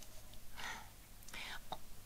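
A woman's soft breaths drawn through the mouth in a pause in reading aloud, with a tiny mouth click near the end.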